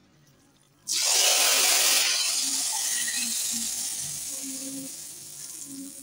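Tarka (hot tempering oil) poured onto cooked lentil dal, setting off a sudden loud sizzle about a second in that slowly dies away over several seconds.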